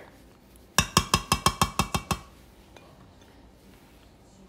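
A metal spoon tapped rapidly against a stainless steel pot: about ten quick, ringing clinks over just over a second, starting about a second in.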